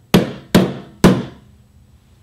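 Three hammer blows on a small box on a desk, about half a second apart. Each is a sharp crack that rings out briefly.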